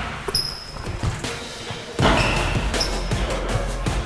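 Basketball bouncing on the hardwood floor of a sports hall, a few short knocks. Background music comes in about halfway through and is louder than the bounces.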